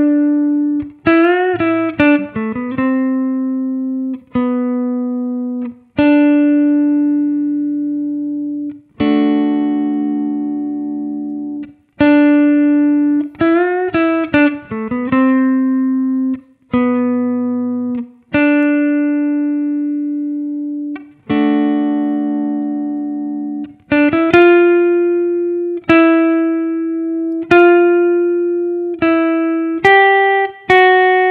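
PRS electric guitar playing a slow single-note solo made of the root and third of each chord, mostly long ringing notes that fade, with short quick runs of notes near the start, around the middle and near the end.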